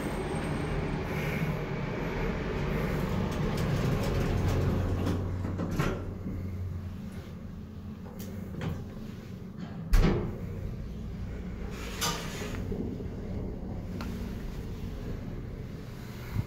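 Circa-1980 hydraulic elevator in operation: a steady low hum for about the first seven seconds, then a few clunks, the loudest about ten seconds in, with its sliding doors moving.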